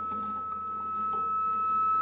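Contemporary chamber music: a steady, pure high tone held throughout, with soft harp notes and quieter pitched sounds entering around it.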